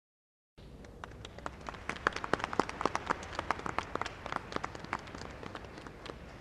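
Concert audience applauding, starting about half a second in and thinning out near the end.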